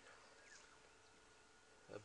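Near silence: faint outdoor ambience in the bush, with one faint short falling note about half a second in.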